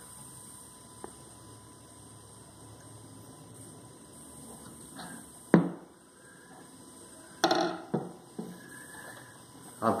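Knocks and handling of a steel bolo knife on a wooden workbench. There is one sharp knock about five and a half seconds in, the loudest sound, as the knife is set down on the bench, then a short cluster of lighter knocks and handling noise a couple of seconds later. A faint steady hum runs underneath.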